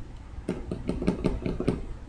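A quick run of about ten faint clicks and taps over a low steady hum.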